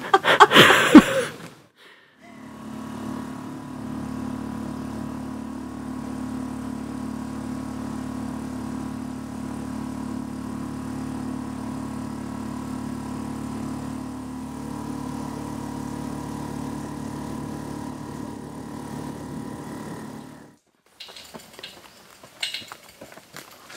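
Small boat's outboard motor running at a steady speed: an even drone that holds one pitch, starting about two seconds in and cutting off shortly before the end.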